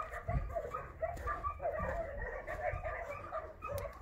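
Faint, busy chatter of many short animal calls, overlapping throughout, over a low rumble.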